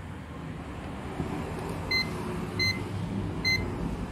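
Zotek ZT102 digital multimeter beeping three times, short high beeps less than a second apart, as its rotary dial is clicked round to the AC voltage range.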